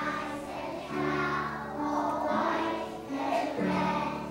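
A choir of preschool children singing a song together with piano accompaniment, held notes moving from one to the next about once a second.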